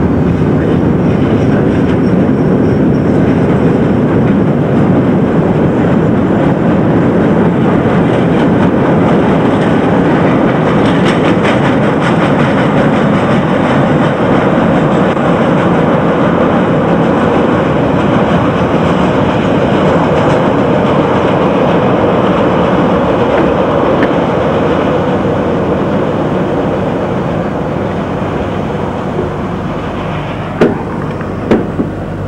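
Chicago L rapid-transit train running on the elevated structure, heard from aboard: a steady rumble of wheels on rails that grows quieter near the end.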